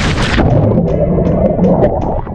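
A person splashing into the sea, a sharp loud splash at the start, followed by muffled rushing and bubbling water as the camera goes under the surface.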